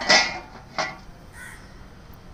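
A metal lid set down onto a steel cooking pot, and a crow cawing; two short harsh sounds, the louder at the very start and another just under a second later.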